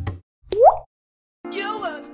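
A short cartoon 'bloop' sound effect, a quick upward-sweeping pop about half a second in, set between silent gaps. Background music stops just after the start and a new tune begins about a second and a half in.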